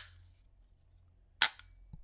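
Sharp metallic snaps of an AR pistol's spring-loaded flip-up front sight being worked: one at the very start and another about a second and a half in, followed by a faint click near the end.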